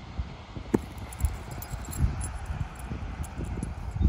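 A tennis ball bounced hard on grass, one sharp knock about three-quarters of a second in, followed by scattered soft thumps, with a low rumble of wind on the microphone.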